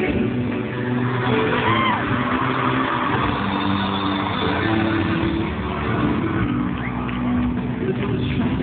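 A boy band's live pop ballad, singing with held notes over the band, recorded loud and muffled by a small camera's microphone, with a crowd screaming throughout.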